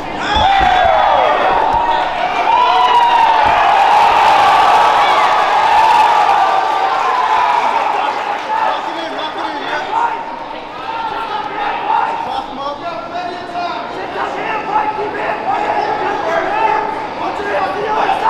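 Fight crowd of spectators shouting and cheering, many voices yelling over one another, loudest in the first half, with a few low thuds near the start.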